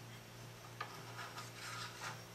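Faint handling sounds of a dial cord and chain being threaded through the band-drum pulleys inside a tube receiver chassis: a light tick just under a second in, then soft rubbing.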